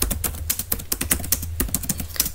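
Computer keyboard being typed on: a quick, uneven run of key clicks, about ten a second, as a short phrase is typed.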